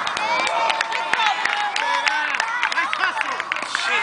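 Many high-pitched girls' voices cheering and calling out at once, with scattered, irregular hand claps.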